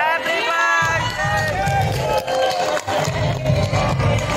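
Party music with a pulsing bass beat, over crowd voices and hands clapping.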